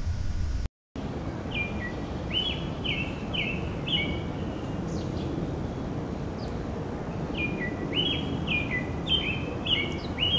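American robin singing: two bouts of short whistled phrases, each note stepping down in pitch, one starting about a second and a half in and another about seven and a half seconds in, over a steady low background rumble.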